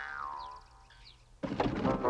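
A cartoon sound effect sliding down in pitch and fading out. After a brief lull, the background music score comes in abruptly about a second and a half in.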